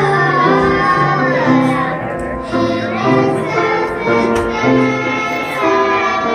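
A group of children singing a Christmas song together, with piano accompaniment.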